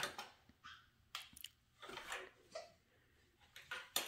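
Faint rustling and small clicks of a gift box and fabric carrier being handled, in short scattered bursts.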